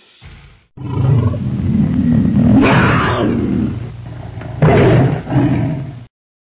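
Roaring big-cat sound effect: a loud roar that starts suddenly about a second in, swells to sharper peaks near the middle and again near the end, and cuts off abruptly.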